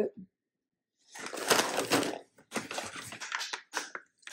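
Plastic snack packets crinkling and rustling as they are handled, in a stretch of about a second, then a run of scattered crackles a little later.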